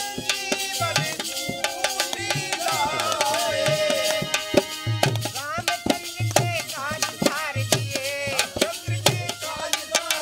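Devotional bhajan music: a harmonium with a hand drum keeping a steady beat, and a wavering melody line over them.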